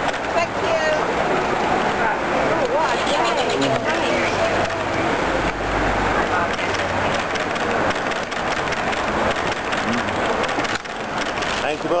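Several people's voices talking over one another, close by, over a steady background of street noise; a low rumble comes in about halfway through.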